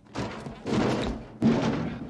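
A few heavy thumps and clunks from a washing machine, the sharpest about one and a half seconds in.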